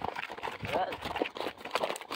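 Horses' hooves striking a dirt road as several horses are ridden together, a jumble of uneven hoofbeats.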